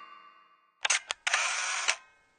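Camera shutter sound effect: two sharp clicks a little under a second in, then a longer mechanical shutter sound ending in a click. This follows the fading tail of a logo jingle.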